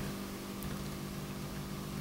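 A steady low hum with a faint hiss: the room's background tone in a pause in the talk.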